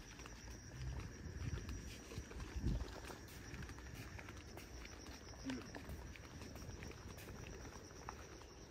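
Footsteps on an outdoor garden path, a few soft low thuds in the first three seconds, over a faint steady high-pitched hum.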